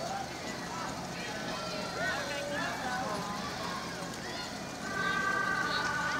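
A vehicle horn sounds one steady two-note chord for just over a second near the end, over people talking in the street.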